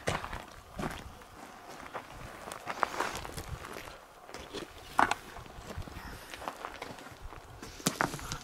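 Footsteps on gravelly desert ground: irregular steps with a few sharper knocks.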